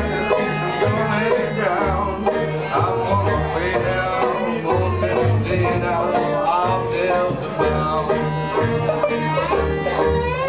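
Bluegrass band playing live: banjo picking in front with fiddle, upright bass and acoustic guitar.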